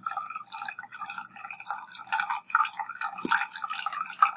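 Thin stream of water poured from a jug into a partly filled glass measuring cup, trickling and splashing unevenly into the water.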